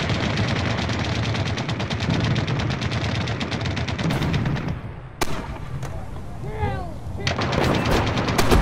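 Machine-gun fire: a long sustained burst at about ten rounds a second, then a single shot about five seconds in. A short lull follows with a few falling whistling tones, and another rapid burst starts near the end.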